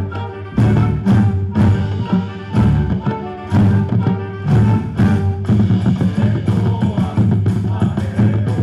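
Live ensemble of violins and guitars playing a lively dance tune in Afro-Ecuadorian and montubio style, with strong beats about twice a second.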